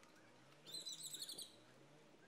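Faint bird chirping: one quick, high twittering phrase lasting under a second, starting a little over half a second in.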